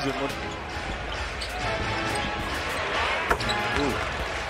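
Basketball game arena sound: a ball dribbled on a hardwood court over steady crowd noise, with a broadcast commentator's voice heard faintly at times.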